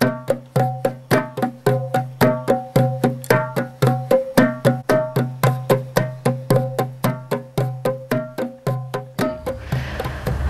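Hand drum played in a steady, repetitive rhythm, about four even strokes a second with a low ringing tone, stopping about nine seconds in.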